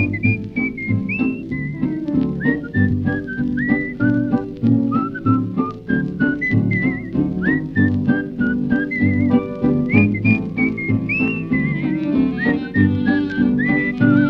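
A woman whistling the song's melody, clear and high with quick upward slides and a few short trills, over a band accompaniment with a steady bouncing beat.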